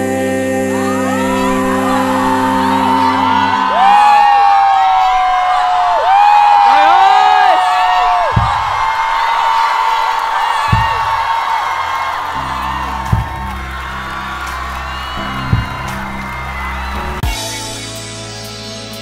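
A held music chord fades out and a concert audience cheers and screams, with many overlapping high shouts and one long loud scream a few seconds in. Near the end a low bass drone with a few sharp hits comes in under the crowd as the next piece of music begins.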